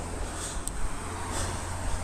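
Outdoor street ambience: a steady low rumble, with a few faint footsteps as the person walks across the road.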